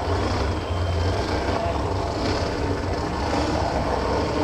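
Steady low rumble of the burnout car's supercharged V8 running at a standstill, with crowd cheering and applause over it that swells and fades a few times.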